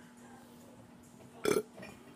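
A woman's short burp about one and a half seconds in.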